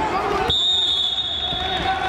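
A single steady high-pitched tone starts suddenly about half a second in and holds for about a second and a half, over voices in the hall.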